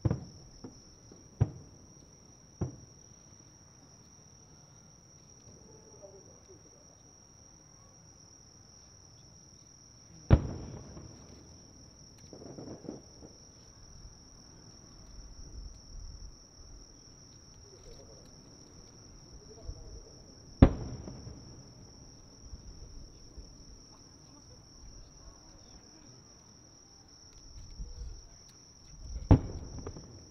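Distant booms of large aerial firework shells (shakudama, 12-inch shells) bursting: a few fainter reports in the first few seconds, two loud sharp booms about ten seconds apart near the middle, and a low rumbling report near the end. Crickets trill steadily and high-pitched throughout.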